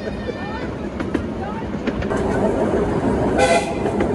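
Miniature steam locomotive's whistle giving one short, loud blast about three and a half seconds in, over the steady running noise of the train on the track.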